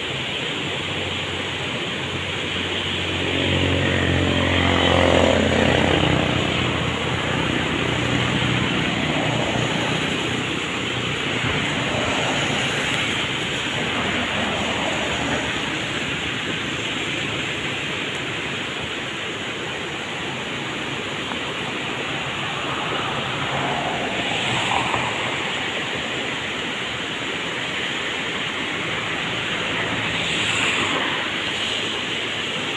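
Floodwater in a creek swollen by continuous rain, rushing fast and muddy over rocks with a steady noise of water. About four seconds in, an engine passes, its pitch dropping; this is the loudest moment.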